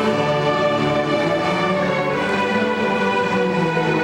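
A school string orchestra playing, with violins bowing long, held notes that shift to new chords every second or so.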